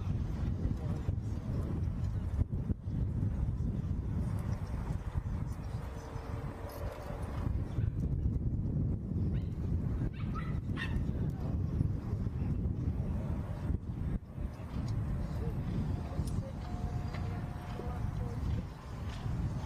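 Steady low outdoor rumble from the show-jumping arena, with a few short high-pitched calls, such as a dog's whines or yips, about six, ten and sixteen seconds in.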